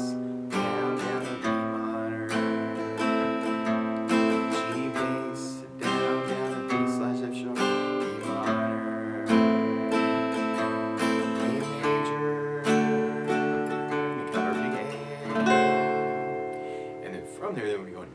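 Acoustic guitar strummed in a bass-down-up pattern: single bass notes alternate with down and up strums through the chorus chords G, D/F#, Em and A. Near the end the strumming stops and the last chord rings out and fades.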